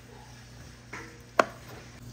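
Chef's knife chopping cooked shrimp on a cutting board: a softer cut just before a second in, then one sharp knock of the blade on the board.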